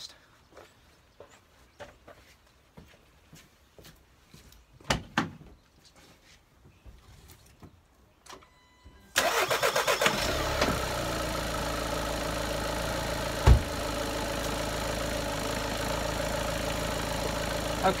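Volkswagen TDI diesel engine started about halfway through and then idling steadily, running so the alternator charges the battery. Before the start, only a few faint clicks and knocks; a short sharp knock comes a few seconds into the idle.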